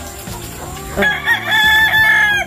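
Rooster crowing loudly about halfway through: a few short notes, then one long held note that carries on past the end and cuts off sharply.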